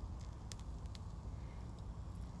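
Faint scattered ticks and crackles from a small fire of pine needles and sappy twigs, over a steady low rumble.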